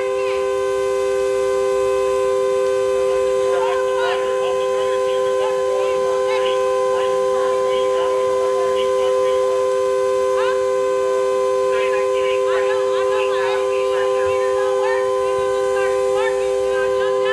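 A car horn sounding continuously on two steady notes from the burning car, never letting up. Short high chirps and squeals come and go over it.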